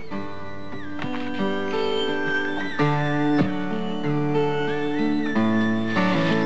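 Instrumental background music, a slow melody of held notes that change every second or so.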